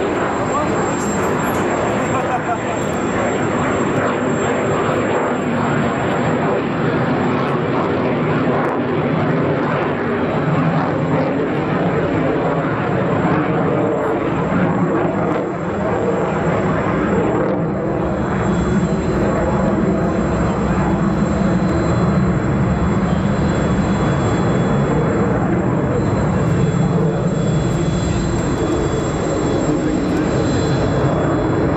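JF-17 Thunder fighter jet flying overhead, its Klimov RD-93 turbofan making a loud, steady jet noise that dips briefly about halfway through and then swells again.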